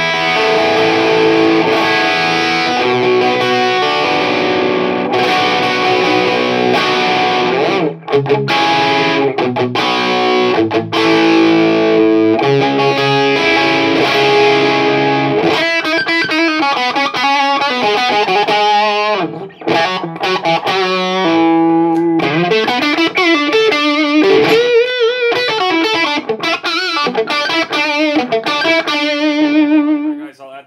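Strat played through an EVH 5150 III 50-watt amp on its blue channel with the gain turned low, giving a mid-gain overdriven electric guitar tone. Ringing distorted chords for about the first fifteen seconds, then single-note lead lines with vibrato.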